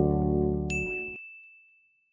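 Sustained synth chords fade out over about a second. Partway through, a single high, bright ding strikes and rings on, slowly dying away, as a logo-reveal chime.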